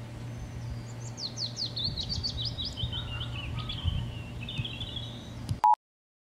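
A songbird singing: a run of quick, high notes sweeping downward, running into a faster trill. Near the end a short, loud beep-like tone sounds, and then the sound cuts off.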